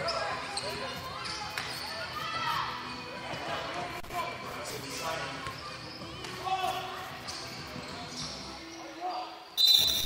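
A basketball bouncing on a hardwood gym floor amid the echoing shouts and chatter of players and spectators in a large hall. A sudden loud, shrill sound comes near the end.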